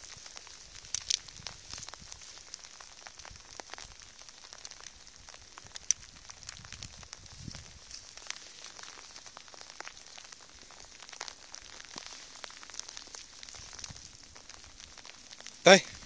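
Steady crackling rustle of footsteps and movement through wet grass and bare brush, with scattered sharp clicks, the loudest about a second in and about six seconds in.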